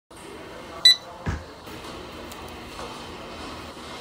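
A single short barcode scanner beep just under a second in, followed by a low thump.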